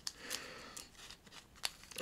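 Faint rustle of baseball cards in plastic penny sleeves being handled, with a few soft clicks, the sharpest about one and a half seconds in.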